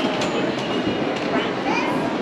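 Steady rumbling ambience of a busy indoor shopping mall, with faint scraps of distant voices.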